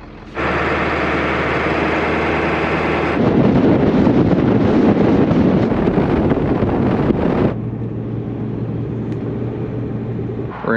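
Diesel pickup truck with a camper driving at highway speed. A steady engine drone with many even tones cuts suddenly to a louder rush of wind and road noise for about four seconds, then drops back to a quieter, steady low engine hum.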